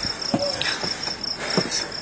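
Cricket chirping in a steady high-pitched pulse, about four chirps a second.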